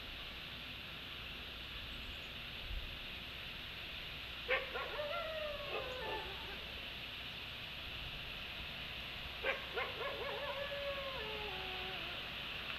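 Wolves howling in two bouts, the first about four and a half seconds in and the second about nine and a half seconds in. Each bout opens with sharp yips and then slides down in several overlapping voices, over a steady hiss.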